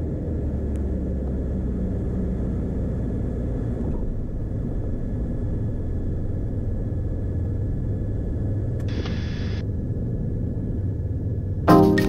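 Beechcraft Bonanza's piston engine and propeller running at low power with a steady low drone as the plane rolls along the runway. A short burst of hiss comes about nine seconds in.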